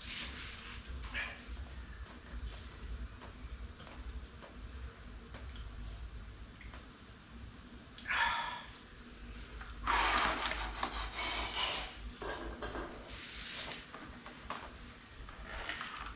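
A man sipping beer from a can, then breathy exhales and rustling handling noise a couple of seconds later, over a low steady hum.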